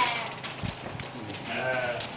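Sheep bleating: a quavering bleat at the start and another beginning about one and a half seconds in.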